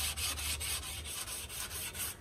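400-grit sandpaper on a sanding block rubbed in quick, even back-and-forth strokes over the nose of a varnished wooden bellyboard. It is smoothing the roughness that dried water-based varnish leaves on the wood.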